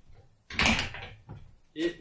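Foot pressing the brake on a drywall lift's swivel caster: a sharp click about half a second in, followed by a couple of softer knocks.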